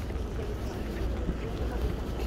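Wind buffeting a phone microphone outdoors, a steady low rumble with faint voices behind it.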